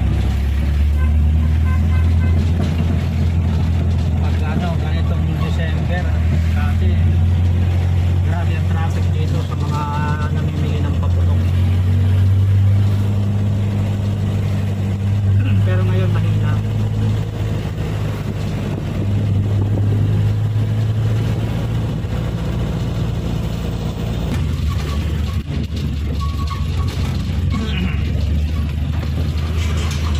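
Engine of a small cab-over truck running steadily while driving, heard from inside the cab as a loud low drone that eases off about three-quarters of the way through.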